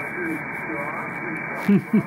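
Lower-sideband voice on the 40-metre amateur band, received by an RTL-SDR behind a DIY upconverter and played through a speaker. A steady, thin band hiss runs throughout, and a ham operator's voice breaks through in short fragments, loudest near the end.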